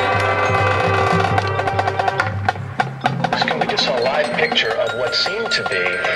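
Marching band playing: a held brass chord over a heavy low register breaks off about two and a half seconds in, giving way to a lighter passage of struck percussion and wavering woodwind-like lines.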